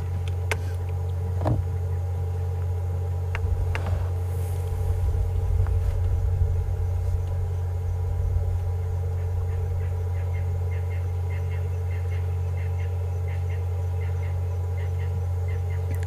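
Low, steady rumble of the safari vehicle's engine idling. In the second half a faint series of short, high chirps repeats about twice a second.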